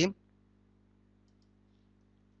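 Near silence with a low, steady electrical hum, and a couple of faint computer mouse clicks about a second and a half in.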